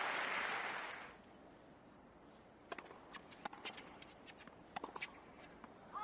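Crowd applause dying away over the first second, then a quiet hard tennis court with a scattered run of light taps: a tennis ball being bounced and footsteps on the court.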